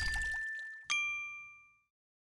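The last held note of an outro music sting fading out. About a second in comes a single bright, bell-like ding sound effect that rings briefly and dies away. It is the notification-bell chime of an animated subscribe button.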